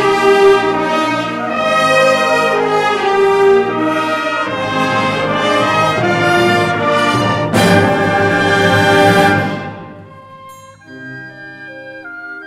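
Symphonic wind band playing loudly, the brass to the fore. About seven and a half seconds in comes a sharp, loud accented chord; the full band fades out about two seconds later, leaving soft held woodwind notes near the end.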